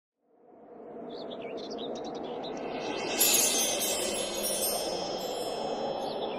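Ambience fading in: a steady rushing background with bird chirps, then wind chimes ringing brightly from about three seconds in.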